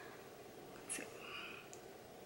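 Quiet room tone with one faint click about a second in, then a short soft hiss: small handling sounds as a concealer wand is taken up and brought to the face.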